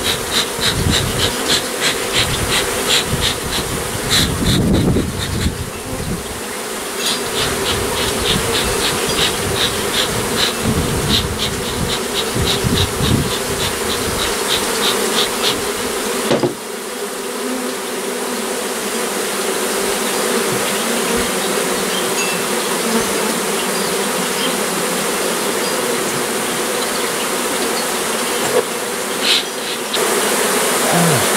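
A mass of honeybees buzzing steadily in one continuous drone as a freshly cut-out colony settles onto and into its new hive box. Through the first half a fast, regular ticking runs alongside the buzz, and it stops a little past the middle.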